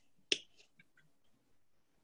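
A single sharp click about a third of a second in, followed by a few faint ticks over a quiet call line.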